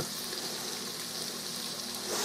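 Quartered onion and celery sautéing in oil and beef drippings in a pressure cooker pot: a steady sizzle.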